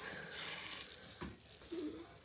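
Jewelry being handled on a tabletop: faint rattling and rustling with a few small clicks.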